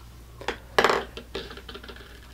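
Light clatter of hard plastic fruit cups being handled and set down. There are two sharp knocks about half a second and just under a second in, followed by softer clicks.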